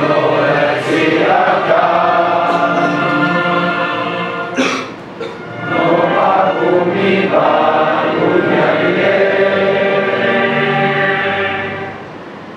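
A large group of men's voices singing together in unison, in long held notes, with a short break between phrases about five seconds in and the phrase closing near the end.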